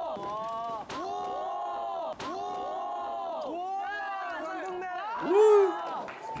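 A group of young men cheering with repeated drawn-out shouts, with a few sharp thuds among them and one louder shout near the end.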